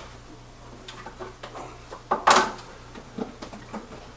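Light clicks and knocks of things being handled on a workbench, with one louder, short scrape or clatter a little past halfway. A steady low hum runs underneath.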